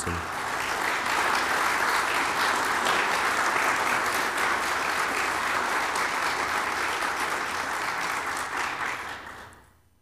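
Audience applauding, a steady dense clapping that fades out over the last second or so.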